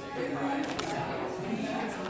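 Several people talking at once in a large room, with a couple of sharp clicks a little under a second in.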